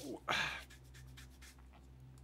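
A short spoken exclamation, then a steady low electrical hum with a few faint computer-mouse clicks.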